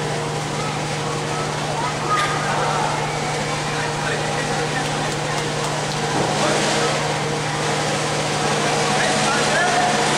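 Audience murmur of many indistinct voices over a steady low hum.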